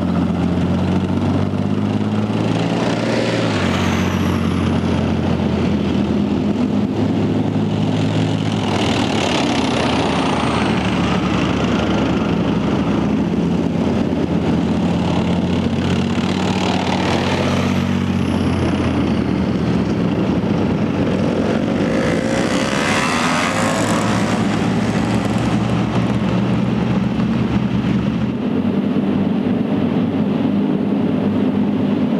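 Leopard 2 main battle tanks driving past one after another: the steady low drone of their diesel engines, with a broad rush of running-gear and track noise swelling up about four times as each tank passes close by.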